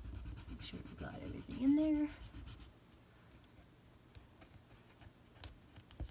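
A burnishing tool rubbed quickly back and forth over paper to transfer a rub-on sticker onto a planner page, with fast scratchy strokes for the first two and a half seconds and a brief hum from the person near two seconds in. After that it is quieter, with a few light clicks and taps, one sharper click about five and a half seconds in.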